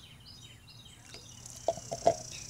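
A small bird calls a quick series of short, falling chirps in the first half. From about halfway on, a high steady buzz sounds. Two sharp knocks near the end come from a plastic cup being handled.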